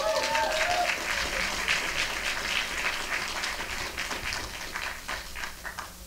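Audience applauding in a hall, with a voice calling out briefly at the start; the clapping dies away near the end.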